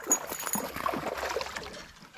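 Water splashing irregularly as a hooked smallmouth bass thrashes at the surface beside the kayak. The splashing dies down just before the end.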